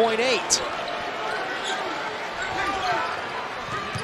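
Basketball arena crowd noise under live play, with the ball bouncing on the hardwood court and short high sneaker squeaks, one sharp squeak about half a second in.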